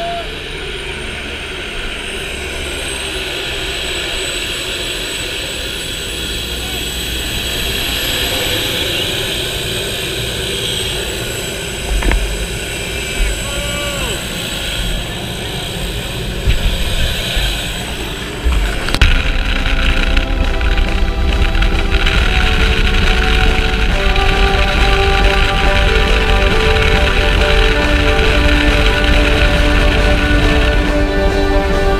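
Steady noise of a small propeller plane's engine running. A little past halfway, background music with sustained notes comes in and carries on.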